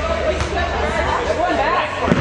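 Voices of spectators and players shouting and calling out during an indoor soccer game, their pitch rising and falling, over a steady low hum.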